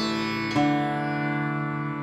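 Surbahar (bass sitar) played solo in the slow alap of Raag Jog: one note plucked right at the start and another about half a second in, each ringing on long and slowly fading.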